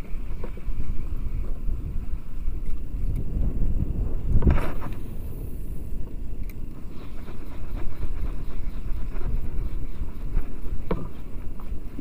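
Steady low rush of wind on the microphone over choppy sea water lapping at a small boat's hull, with one brief louder surge about four and a half seconds in.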